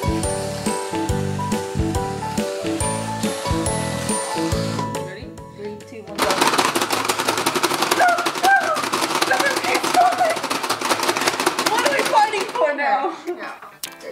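Background music for about the first five seconds, then a fast, continuous clatter of plastic clicks as two players hammer the buttons of a Pie Face Showdown toy, with high excited cries over it. The clatter stops about a second before the end.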